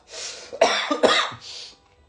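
A man coughing: about three short, breathy coughs in a row, the last one softer.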